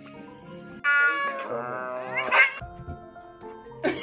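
A seal-point Siamese-type cat gives one long meow of about two seconds, starting about a second in; its pitch sinks and then rises at the end. Light background music plays underneath.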